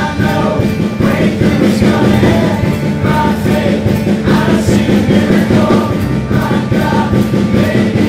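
Live church worship band playing a song, with several voices singing together over guitars and bass.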